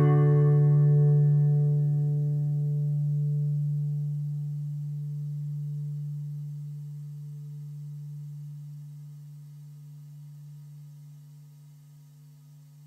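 Final chord of the song on a Yamaha NTX nylon-string acoustic-electric guitar, left to ring and slowly dying away over about ten seconds, a low note outlasting the rest.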